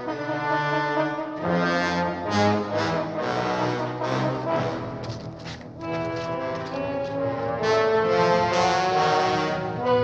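Orchestral film score led by brass, playing held notes in changing chords; it dips briefly just past the middle and swells louder in the last couple of seconds.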